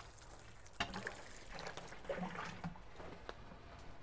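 Water poured quickly from a small container onto compost in a seed tray: a faint trickling splash.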